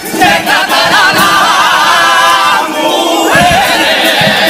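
Carnival comparsa chorus of men singing long held notes in several voices with wide vibrato, over Spanish guitars. The held chord fades a little before three seconds in, and a new sung phrase with guitar strumming comes in just after.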